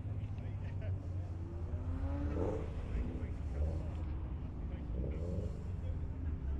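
Outdoor car-show ambience: a steady low rumble, with people talking in the background about two seconds in and again near the end.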